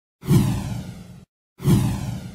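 Two whoosh sound effects on an animated intro title. Each starts sharply and fades away over about a second, with a brief silence between them.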